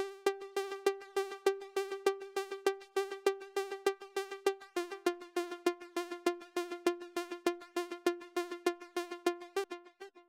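Basic synth pluck patch ('Airy Picks') on Logic Pro X's Retro Synth playing a fast, even run of repeated notes on one pitch, which steps down a little about halfway through and stops just before the end. The tone of the notes shifts over time because the Modulator's LFO is routed through the mod wheel to the synth's filter cutoff.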